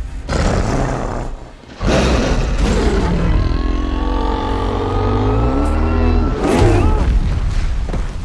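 Film fight soundtrack: a giant creature's long, deep roar that bends down in pitch near its end, laid over dramatic score and heavy booming impacts.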